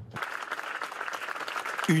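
A crowd applauding, many hands clapping together in a dense, even stream.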